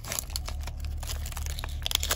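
Foil trading-card pack wrapper crinkling and crackling in the hand as it is pulled open, a dense run of small irregular crackles.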